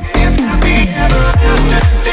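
Bass-heavy electronic dance music remix, with a kick drum about twice a second under a melody.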